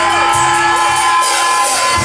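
Live hardcore band through a loud club PA between full riffs: held guitar tones and feedback with pitch-bending squeals, high cymbal-like hiss and crowd noise underneath.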